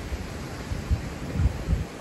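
Wind buffeting a phone's microphone in uneven gusts: a low rumble over a steady hiss.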